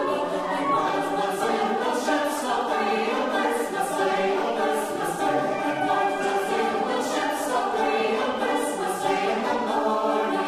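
Mixed choir singing in harmony on held notes, with a flute accompanying; the hiss of sung consonants recurs throughout.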